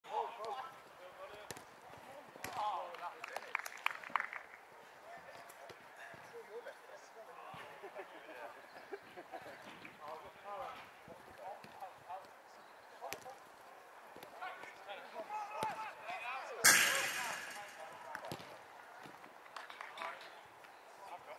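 Small-sided football on an artificial pitch: players shouting to each other across the pitch, with sharp knocks of the ball being kicked. About three-quarters of the way through comes a loud crash with a short ringing rattle, the ball slamming into the pitch's metal fence.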